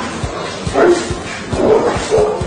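A rottweiler barking in two short bursts, about a second apart, over background music with a steady low beat.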